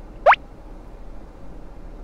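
A single quick rising 'bloop' sound effect, one short sweep shooting up in pitch about a quarter of a second in, over a faint steady background hum.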